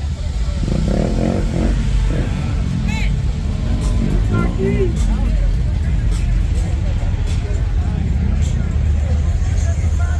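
Classic cars cruising slowly past, their engines a steady low rumble that grows heavier in the second half, mixed with voices and music.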